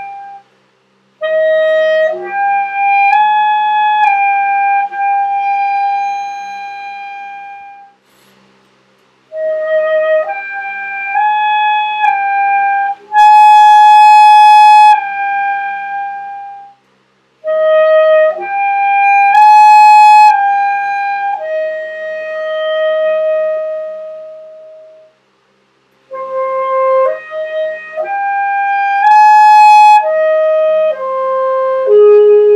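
Alto saxophone playing an upper-register exercise: four short phrases, each a few notes stepping upward and ending on a held note, with short breaks between phrases. The notes are worked up from an easy note with the front-key fingerings, the groundwork for high F sharp. The loudest, brightest notes come in the middle phrases.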